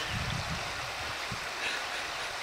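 Shallow creek running over rocks, a steady rush of water.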